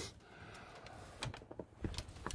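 A few faint, light clicks and taps from a wooden hutch door with a metal barrel-bolt latch being handled and opened, mostly in the second half; otherwise quiet.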